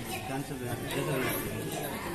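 Indistinct talk and chatter of several people in a large hall, with no words picked out.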